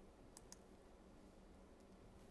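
Near silence: faint room tone with two quick, faint computer mouse clicks close together, about half a second in.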